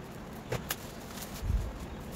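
Scissors cutting the plastic wrapping of a parcel: two light snips about half a second in, then a dull knock about a second and a half in as the scissors are set down on a table.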